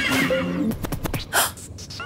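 Cartoon sound effect of a malfunctioning DJ booth going haywire: warbling, glitchy electronic noises breaking into a quick run of stuttering clicks about halfway through, then a short burst.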